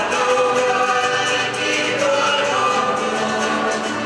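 Live cueca played by a Chilean folk ensemble: several voices singing together over guitar and accordion, with a steady beat.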